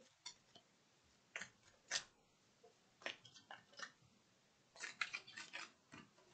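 Faint, irregular clicks and flicks of a tarot deck being shuffled by hand, coming in short bursts with a longer run near the end.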